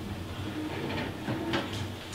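Quiet room tone: a steady low hum with a few faint clicks and rustles.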